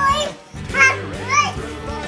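A toddler's high-pitched babbling and calling out, two short calls about a second apart, over background music.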